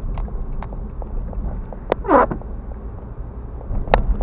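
Car cabin noise while driving on a wet road: a steady low rumble with scattered light ticks and knocks. About two seconds in comes a brief squeak that falls sharply in pitch.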